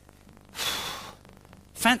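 A man's single huff of breath, an exasperated sigh lasting about half a second, followed near the end by the start of his grumbling speech.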